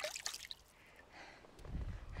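Water splashing and dripping in a plastic bucket as a hand dips into it: a burst of sharp splashes in the first half-second, then quieter. A low rumble comes in near the end.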